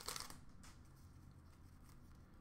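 Near silence, with a few faint crinkles of a foil trading-card pack being handled in the first half second.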